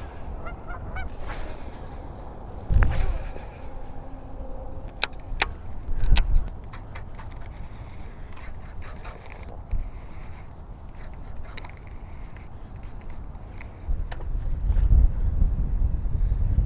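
Geese honking off and on, over low wind rumble on the microphone that grows louder near the end, with a few sharp clicks about five to six seconds in.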